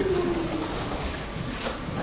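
A man's voice holding a long, low, drawn-out vowel that falls slightly and trails off within the first second, followed by a pause with only faint room noise.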